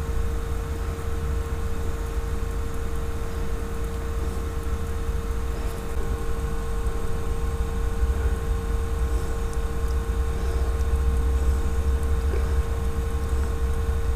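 Steady low mechanical rumble with a constant faint whine over it, a motor-like background hum that runs unbroken and swells slightly in the second half.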